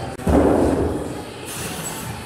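A single loud, heavy thud about a quarter second in, dying away over about a second.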